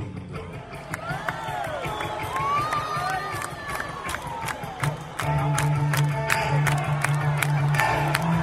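Music with a steady beat, with men shouting and cheering over it. A bass line comes in about five seconds in.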